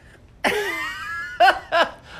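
A man laughing loudly: one long laugh sliding down in pitch, then two short bursts.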